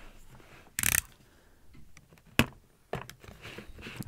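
Hands prying the lid off a cylindrical cardboard speaker box: a short scrape about a second in, then a sharp click and a few lighter ticks as the lid works loose.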